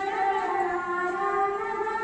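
A girl singing into a microphone, holding long, steady notes.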